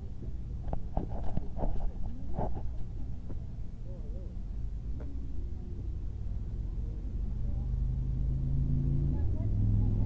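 A car engine idling with a low, steady note that grows louder over the last few seconds. Faint voices and a few sharp clicks come about one to two and a half seconds in.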